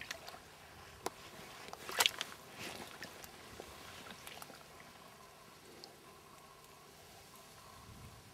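Faint sloshing and trickling of shallow river water around hands holding an Atlantic salmon in the current, with a brief louder splash about two seconds in.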